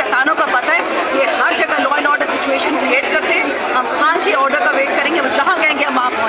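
Many voices talking at once in a tightly packed crowd, a steady mass of overlapping speech with no single voice clear.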